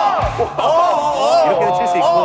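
Several men exclaiming and whooping together in excited reaction to a fast table-tennis rally, with a low thump about a quarter second in.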